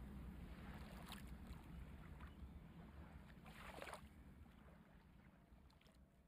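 Near silence: a faint low hum that fades, with soft scratching of a pencil drawing on paper, once about a second in and again, longer, between three and four seconds in.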